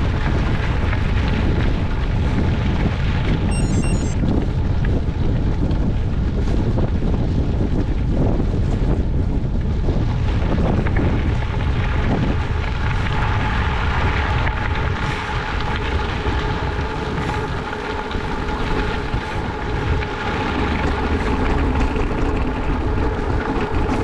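Wind rushing over a bicycle-mounted camera's microphone, with the bicycle's tyres rolling on a gravel road. A steady hum joins about halfway.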